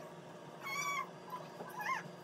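Two high-pitched calls from a small pet: a steady call about a third of a second long about half a second in, then a shorter call that rises and falls near the end.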